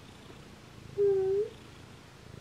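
Domestic cat purring softly and steadily while being stroked. About a second in comes one short, louder call at a steady pitch that turns up slightly at the end.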